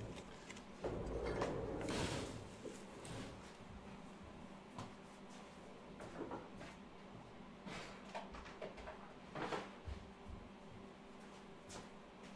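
Faint handling and movement noises of a person getting up and moving about a small room: a longer rustle or scrape about a second in, then a few scattered soft knocks.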